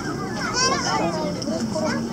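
Indistinct background chatter of children's voices, with a brief higher-pitched squeal about half a second in.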